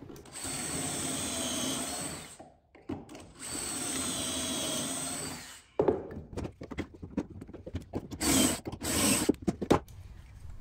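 Cordless drill with a stepped pocket-hole bit boring into a pine board through a portable pocket-hole jig, in two steady runs of about two seconds each. After that come short knocks and clicks as the clamp is released and the board and jig are handled.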